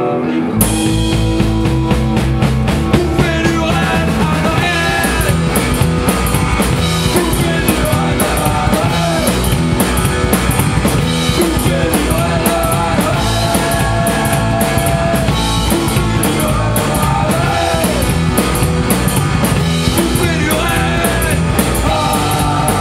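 Rockabilly band playing an instrumental passage live in a rehearsal room: upright bass, electric guitar and drum kit. The full band with drums comes in about half a second in, after a brief sparser moment, and runs at a steady beat, picked up by a camcorder's microphone.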